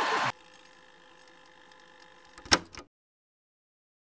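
Audience laughter cut off abruptly a fraction of a second in, leaving a faint hum. About two and a half seconds in comes a single sharp electronic hit from the channel's outro transition, then dead silence.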